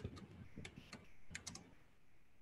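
Faint computer keyboard keystrokes, about seven uneven taps, as a short word is typed.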